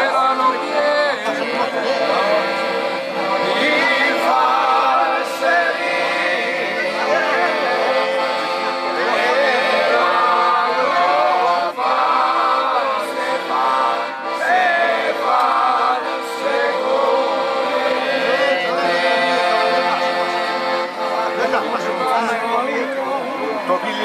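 Men's voices singing a traditional Apennine folk song, accompanied by a piano accordion holding sustained chords.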